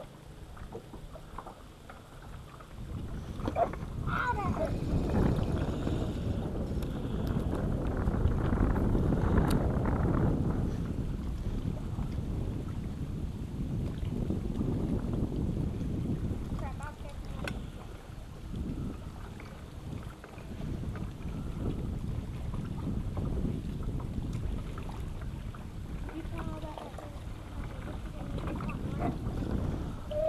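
Wind rumbling on the microphone over small waves slapping against a boat's hull, an uneven low noise that swells about three seconds in and rises and falls from then on.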